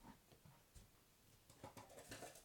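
Faint scattered clicks and rustles of someone rummaging for more sushi sticks, in a near-silent small room.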